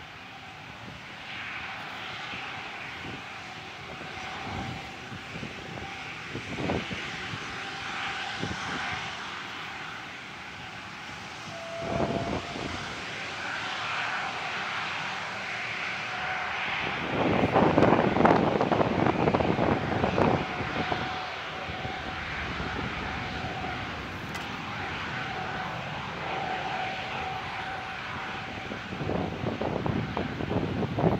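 Jet airliner engines passing near the runway: a steady whine over rushing jet noise that swells to its loudest between about 17 and 21 seconds in, then eases.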